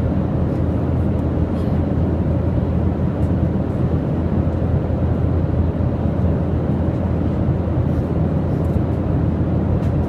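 Airliner cabin noise in flight: a deep, steady rushing of engine and airflow noise heard from inside the cabin.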